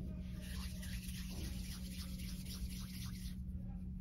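Soft, brushing rub of hands rolling a small piece of moist clay into a ball between fingers and palm, fading out shortly before the end, over a steady low hum.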